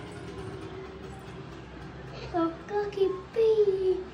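A young child singing in drawn-out notes. A faint held note comes first, then louder notes from about halfway, and the last one is held and slides down.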